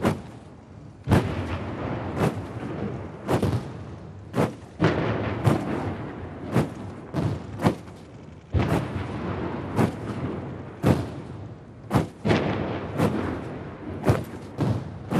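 Ceremonial salute cannons firing blank rounds one after another in a hundred-gun salute, about one shot a second, each boom trailed by a long echoing rumble.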